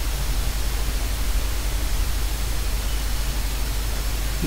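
Steady hiss with a low hum beneath it: the background noise of a home voice recording, with no other sound.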